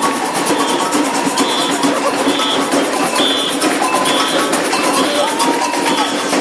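Brazilian samba batucada percussion: a dense, steady drum groove, with a short high note repeating about once a second over it.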